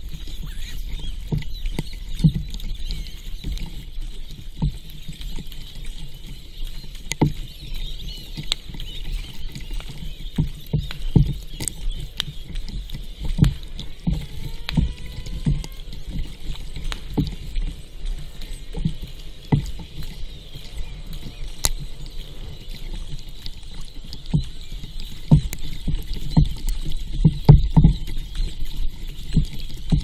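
Wooden paddle strokes in seawater beside a sit-on-top kayak: irregular splashes and low knocks of water against the hull, a stroke every second or so, over a steady hiss, heard from a camera mounted on the kayak.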